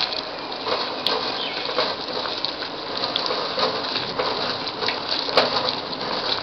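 Papaya halva mixture with milk sizzling and bubbling in a hot kadai over a high gas flame, a steady hiss broken by scattered pops, with a sharper pop about a second in and another near the end, as the mixture spatters.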